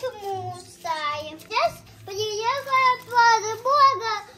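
A young boy talking in a high, sing-song voice, in several short phrases with brief pauses between them.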